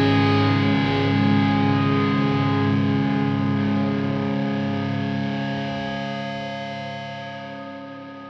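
Distorted electric guitar holding a final chord that rings out and fades steadily, closing a punk rock song.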